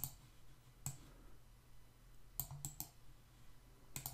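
Faint computer mouse clicks: one near the start, one about a second in, then three quick clicks in a row past the middle.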